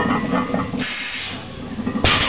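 A lifter breathing hard and straining while lowering a 455 lb barbell from a conventional deadlift, with the loaded plates hitting the floor at the very end.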